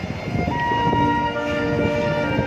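A marching band's brass section sounding long held chords that come in about half a second in, one note first and then more stacking on, over steady drum beats.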